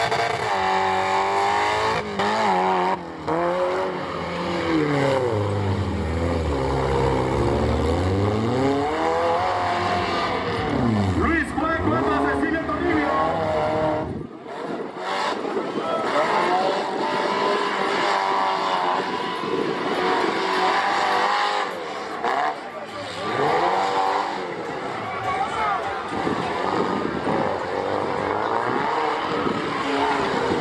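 Engines of off-road 4x4 competition vehicles revving hard in deep mud, the pitch climbing and falling again and again. About halfway through the sound changes suddenly and the deep low end drops away, while the revving goes on.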